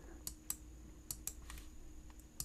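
Faint computer keyboard keystrokes: a handful of separate key clicks at uneven spacing.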